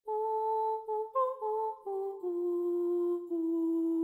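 A short wordless vocal melody, hummed, on a series of held notes: a few repeated notes with a brief step up, then stepping down to one long low note.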